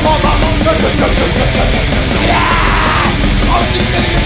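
Loud, rough rock song with a driving beat and a yelled vocal line about two seconds in.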